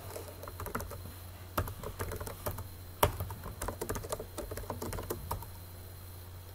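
Computer keyboard typing: irregular runs of keystrokes entering a login and a router command, with two harder key strikes about one and a half and three seconds in. A steady low hum runs underneath.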